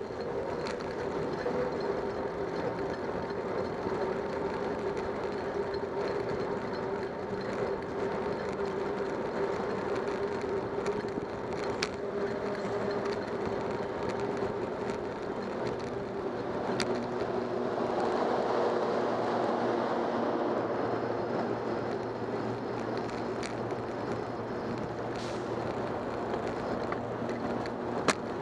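Continuous rolling noise of a bicycle ride picked up by a camera mounted on the bike: tyre and road rumble under a faint steady hum, with a few sharp clicks and rattles from bumps in the street.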